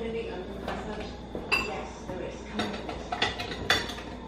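Several light clinks of kitchenware in the kitchen, each short and ringing briefly, coming in the second half over a low steady hum.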